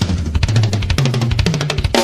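Drum kit fill: a fast, unbroken run of tom and bass drum strokes, moving from the floor tom up to the higher toms.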